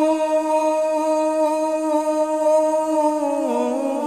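A man singing a Punjabi naat, holding one long steady note, then sliding down through a few ornamented turns near the end.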